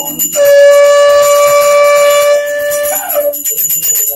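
A conch shell (shankh) blown in one long steady note for about two and a half seconds, wavering and dropping in pitch as it breaks off. A small hand bell rings before and after it.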